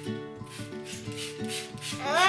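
Scratchy rubbing of hands and a brush working through a toddler's thick curly hair, in repeated strokes, over background music with plucked notes.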